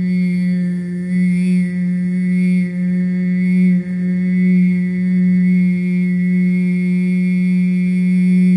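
A woman's voice toning one long held note on a steady pitch, wordless, with the vowel colour shifting about once a second: sound-healing toning.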